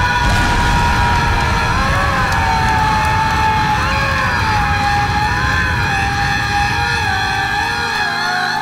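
Loud, distorted music: a single high held note that wavers and dips in pitch, over a dense low rumble.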